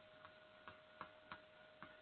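Chalk tapping on a blackboard as a word is written: about five faint, irregular clicks.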